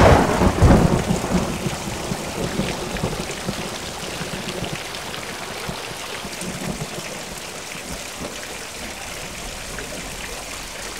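A thunderclap breaks in suddenly and rumbles away over about four seconds, above a steady rush of running water that carries on after it.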